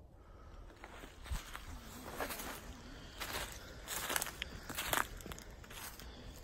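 Footsteps on dry leaf litter in woodland, irregular steps with the rustle of leaves underfoot.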